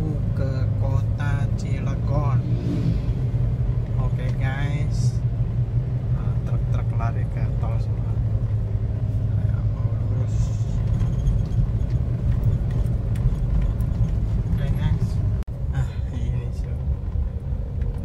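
Car engine and road noise heard from inside the cabin while driving: a steady low drone, with a voice heard briefly in the first few seconds.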